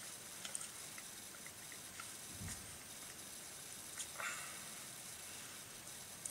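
Quiet chewing of a soft, overripe banana: a few faint wet mouth clicks over a steady hiss, with one dull low thump about halfway through.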